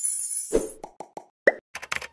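Animated news-logo outro sting: a hissy whoosh, then a string of bubbly pops, and a quick run of short clicks near the end.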